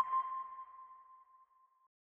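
A single sonar-style ping sound effect: a sharp strike, then one clear tone that fades away over about a second and a half.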